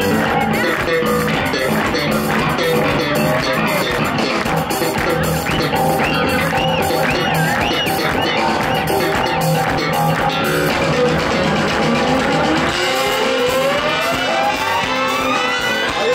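A live ska-rock band plays, with electric bass guitar, congas and drum kit. Near the end, a single tone sweeps steadily upward in pitch over about four seconds.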